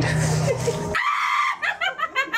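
A woman's theatrical witch cackle: a high shriek about a second in, then rapid high-pitched cackling, about six bursts a second. Music plays under the first second.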